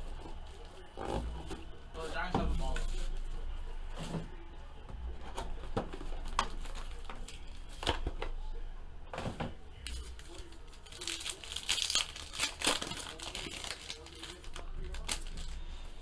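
Hands opening a trading-card box and its packs: cardboard and plastic wrapping crinkling and tearing, with light taps and knocks as the cards are handled. A denser stretch of crinkling comes about eleven to thirteen seconds in.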